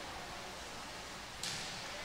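Quiet, steady background hiss of a school gymnasium, picked up between commentary, with a slight rise in the hiss about one and a half seconds in.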